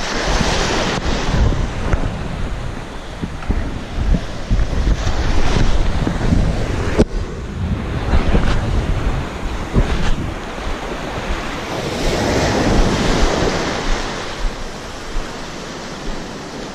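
Surf washing in and out over a sandy beach in shallow water, with wind buffeting the microphone in a heavy low rumble. A single sharp click about seven seconds in.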